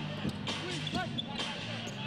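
Basketball bouncing on a hardwood court, a few sharp strikes, over a steady arena hum and crowd noise.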